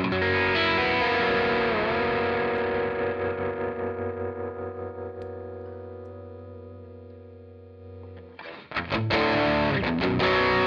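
Electric guitar through the Menatone Fish Factory's Blue Collar overdrive side: one overdriven chord is struck and left to ring with a slight bend, slowly fading over about eight seconds, then fresh picked notes start near the end.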